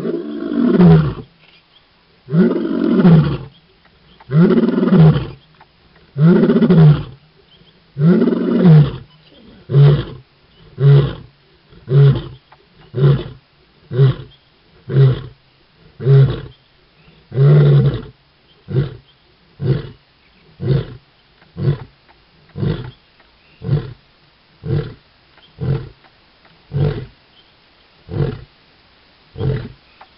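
Male lion roaring. A few long, deep roars that rise and fall in pitch are followed by a run of short grunts about one a second, which grow shorter and fainter toward the end.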